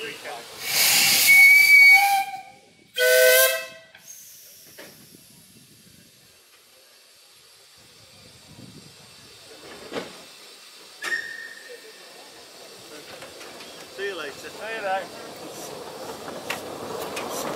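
Two steam locomotive whistle blasts of different pitch: a higher, breathy whistle of about two seconds, then a shorter, lower, fuller-toned one. Quiet steam hiss follows.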